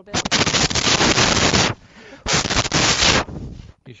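Two loud blasts of rushing air noise hitting a microphone, the first about a second and a half long, the second about a second: wind or breath striking the mic capsule.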